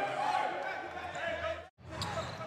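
Basketball game sound: a ball bouncing on the hardwood court amid voices, broken by a brief dropout to silence near the end where the edit cuts.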